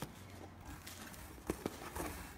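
Faint rustling of tissue-paper-wrapped clothes in a cardboard box being handled, with two light clicks about a second and a half in.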